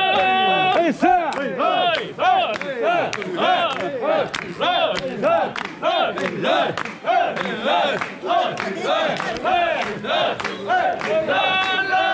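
Crowd of mikoshi bearers shouting a rhythmic chant in unison as they carry the shrine, about two shouts a second, each call rising and falling in pitch.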